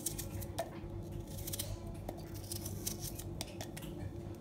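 A small knife cutting through a red onion held in the hand, making a series of crisp, irregular cuts, with onion pieces dropping into a steel jar. Under it runs a steady low hum.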